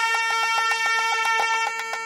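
Nagaswaram music: a steady held reed note over a drone, with fast, even drum strokes at about seven a second.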